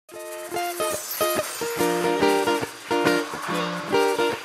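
Acoustic guitar plucking a bouncy, repeated pattern of chords, about three strokes a second, each note ringing briefly before the next.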